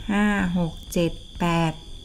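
A woman counting aloud in Thai, "five, six, seven, eight", in short separate words, over a steady high-pitched tone that does not change.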